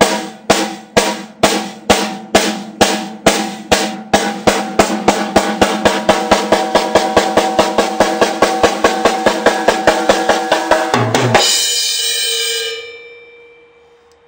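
Drumsticks striking a drum once after each backward twirl, at first about two strokes a second and gradually speeding up to about five a second. The run ends about eleven seconds in with a heavier final hit with a low thump, likely a cymbal crash with the kick drum, which rings out and fades over about a second and a half.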